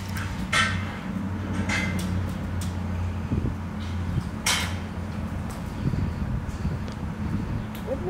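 A few short plastic clicks and knocks as a small speaker is pressed and worked into a tight-fitting car dashboard speaker opening, over a steady low hum.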